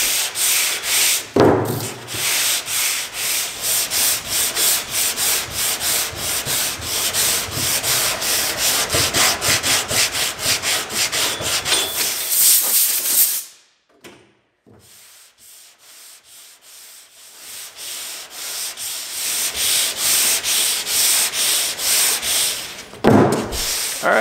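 Hand sanding block scrubbed back and forth over the epoxy-primed steel Oldsmobile deck lid in quick, even strokes: block sanding to cut down heavy sand scratches and thin the epoxy coat before primer surfacer. A single low knock sounds about a second and a half in. The strokes stop suddenly a little past the middle, then resume softer and build back up.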